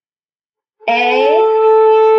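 A bowed violin-family string instrument sounds a steady, held A, fingered with four fingers down on the D string. It begins sharply about a second in at the start of a slurred down bow, with a voice naming the note "A" over it.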